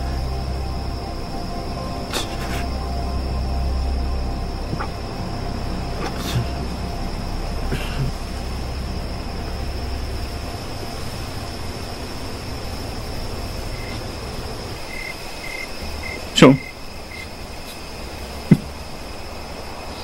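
Film soundtrack of a night scene: a low, dark music drone under a steady insect chirring like crickets, with the drone falling away about three-quarters of the way through. Near the end come two sudden loud sharp sounds, the first sweeping quickly downward in pitch.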